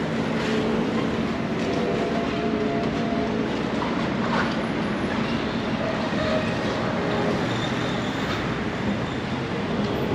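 Steady mechanical noise with faint humming tones running through it.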